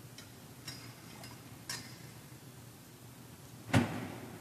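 Communion vessels being handled on a wooden altar after communion: four light metallic clinks in the first two seconds, then one louder knock near the end as a vessel is set down, with a brief echo in a large church, over a low steady hum.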